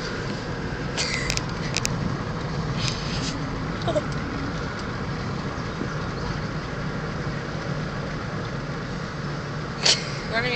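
Steady road and engine noise of a moving car, heard from inside the cabin as an even low rumble, with a few faint short clicks about a second in.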